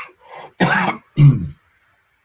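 A man coughs twice in quick succession, clearing his throat, the second cough ending with a short voiced rasp.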